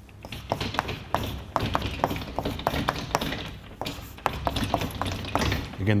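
Chalk tapping and scratching on a blackboard as an equation is written out: a quick, irregular run of sharp taps.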